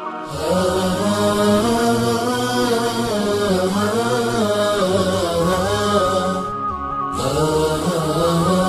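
Chanted vocal music: a single voice drawing out long, bending melodic lines over a steady low drone, coming in a moment after the start and pausing briefly a little before the end.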